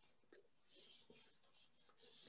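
Faint rubbing of a board eraser wiping a chalkboard, a few short strokes.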